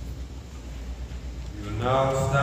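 A low steady hum in a quiet pause at the lectern microphone, then a man's voice starts near the end with a drawn-out sound.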